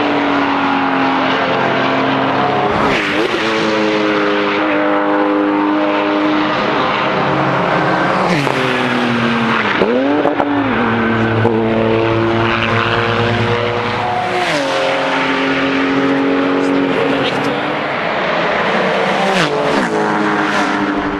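Porsche sports cars' engines running on a race circuit, the engine note holding for a few seconds and then dropping or climbing in pitch at gear changes and as cars pass.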